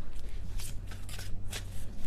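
A tarot deck being shuffled by hand: a quick run of crisp, papery card flicks, several a second.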